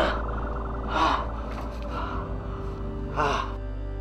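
Low droning background music, with a man gasping three times over it: once at the start, once about a second in and once past three seconds.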